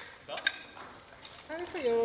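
Cutlery clinking against plates and glassware at a dinner table: a couple of sharp, briefly ringing clinks about half a second in. A voice or music starts up near the end.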